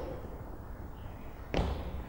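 Quiet room tone, then a single footfall thud about a second and a half in, a foot landing during a step-up on a wooden plyo box.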